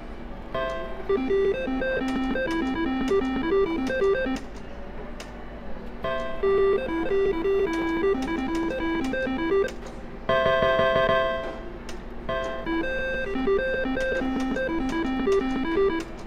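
Reel slot machine's electronic sounds: short beeping tunes as the reels spin and stop, with a denser, louder ringing chime about ten seconds in.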